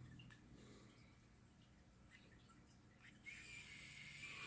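Mostly near silence. About three seconds in, the SQ-ES126 smart screwdriver's small electric motor starts spinning faintly, a thin steady whine, with the driver set to gear one.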